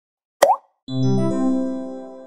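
Logo intro sting: a short rising pop about half a second in, then a sustained musical chord that rings on and slowly fades.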